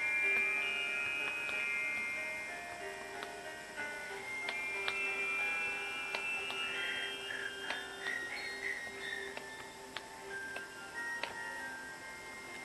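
Soft background music of held, chime-like tones, with faint scattered clicks from diamond-painting drills being picked up and pressed onto the canvas.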